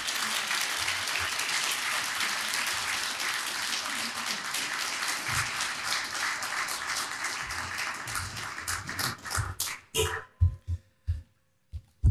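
Audience applauding steadily for about nine seconds, then dying away into a few last scattered claps near the end.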